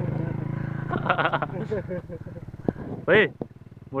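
Motorcycle engine running steadily at a low, even pitch, fading out about two seconds in.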